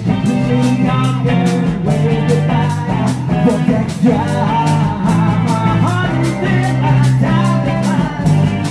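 Rock band playing an instrumental passage, with guitar, bass and drums over a steady drum beat, starting straight off a four-count.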